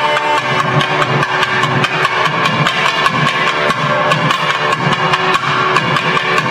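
Nadaswaram double-reed pipes playing sustained melodic notes together over regular strokes of a thavil barrel drum, a live South Indian periya melam ensemble.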